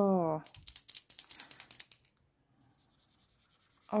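Paint marker nib ticking and scratching on notebook paper in a quick run of short strokes, stopping about two seconds in.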